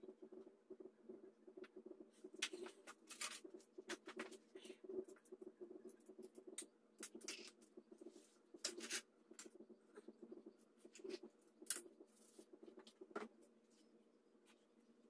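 Faint, scattered clicks and scratchy rubs of hands handling a floor jack's small metal hydraulic pump parts and a shop rag, over a low steady hum.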